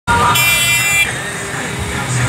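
A shrill horn sounds once, a steady high-pitched blast lasting well under a second, followed by busy street and crowd noise.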